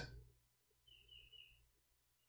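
Near silence: room tone, with a faint short high chirp about a second in.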